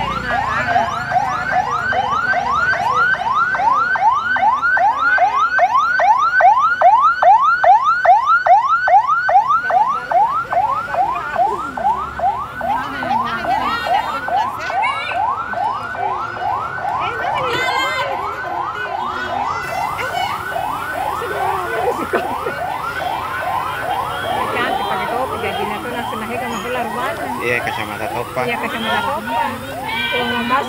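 Ambulance siren sounding a fast yelp: a rising wail repeated about three times a second.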